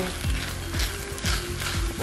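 A spatula stirring and scraping quinoa and kimchi around a frying pan, under background music.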